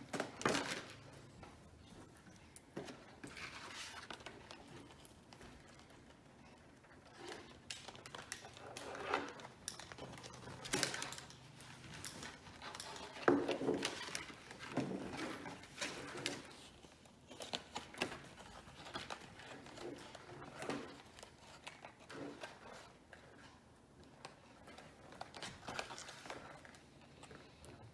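Irregular taps, clicks and rustles of craft materials being handled on a tabletop: paper, a card board and wire being moved and worked.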